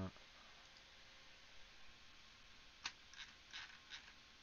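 Near-silent room with a few light, sharp clicks in the second half, from computer controls as a video is being searched for and selected.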